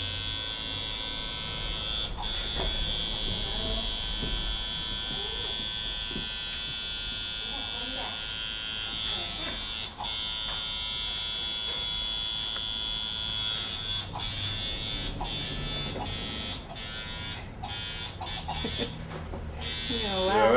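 Electric tattoo machine buzzing steadily while tattooing, with two brief stops; near the end it cuts out and restarts many times in quick succession as the artist works in short passes.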